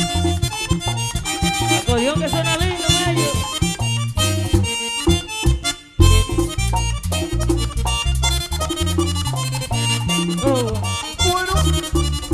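Live merengue típico band playing an instrumental passage, with the accordion leading over a driving bass and percussion beat. About halfway through the music briefly drops out, then the full band crashes back in.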